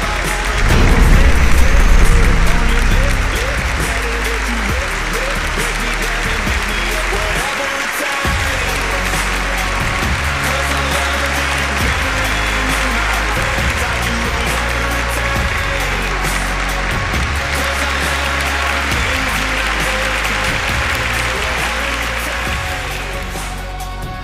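Music with an audience applauding and cheering over it. The sound swells loudest about a second in, then holds steady.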